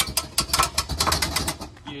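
Rapid, irregular metallic clicking and rattling from the hand crank of a Palomino tent trailer's cable roof-lift mechanism as the crank handle is worked in its socket and starts to turn.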